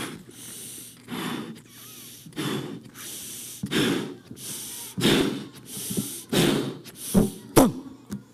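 A man blowing up a latex balloon by mouth: a run of about eight short, gasping breaths, roughly one a second, each quick inhale followed by a puff into the balloon. A sharp click near the end.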